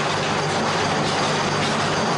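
Steady, loud machinery noise with a low, even hum underneath, from equipment running in the room.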